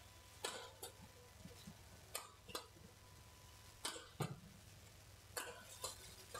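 Badminton rally: rackets striking a shuttlecock in a series of about eight sharp, short hits, coming roughly in pairs about every one and a half seconds.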